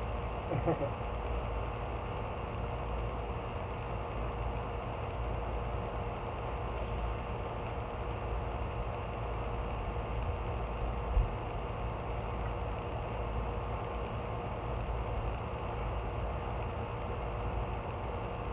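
A metal bow rake lightly scraping and scratching through loose topsoil over a steady background hum.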